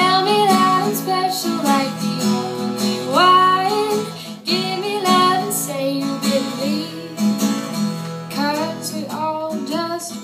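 Acoustic guitar strummed steadily under a woman's singing voice, which comes in phrases throughout.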